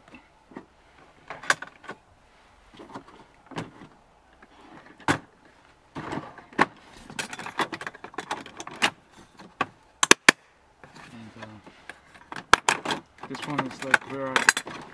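Hard plastic clicks, knocks and rattles from a Husky plastic rolling toolbox organizer being handled: the top organizer lid shut and clicked into place, with small items rattling inside. Two sharp snaps come about ten seconds in.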